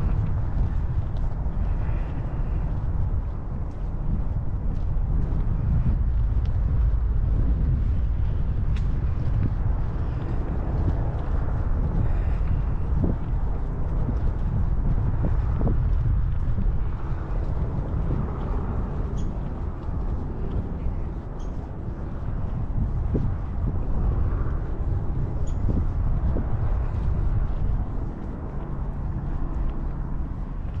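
Steady low wind rumble buffeting an action camera's microphone during a walk outdoors, with a few faint ticks scattered through it.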